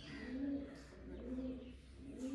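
A pigeon cooing, a run of soft, low coos about two a second.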